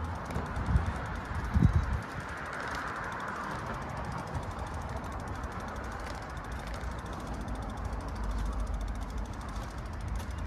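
Outdoor city street ambience: a steady hum of distant traffic, with a few low bumps about a second and a half in and a low rumble near the end.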